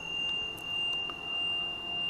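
A steady high-pitched tone holds unbroken over a soft, low background drone that swells and fades about once a second. This is typical of a meditation music bed.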